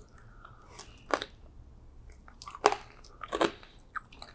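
Close-miked eating: chewing and biting of soft, marshmallow-topped rainbow pastry. Three sharp, wet mouth clicks stand out, about a second in, near the three-second mark and just after.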